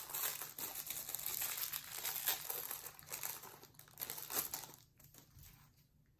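Plastic Lego minifigure blind bag crinkling as it is handled and opened, the crinkling dying down a little before the end.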